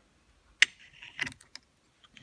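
Small metal clicks and taps of Tillotson HD carburetor plates being handled and lined up on the carburetor body: one sharp click about half a second in, then a few lighter clicks about a second in.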